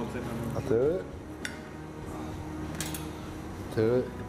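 Metal cutlery clinking against a ceramic plate as a knife and fork cut into a pancake, with two sharp clinks.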